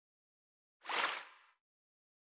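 A single short whoosh, an edited-in sound effect that swells and fades within about half a second, surrounded by silence.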